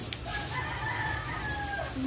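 A rooster crowing faintly: one long drawn-out call that dips in pitch at its end.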